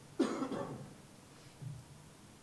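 A single short cough-like throat-clear just after the start, fading within about half a second, then a faint small sound near the end over quiet room tone.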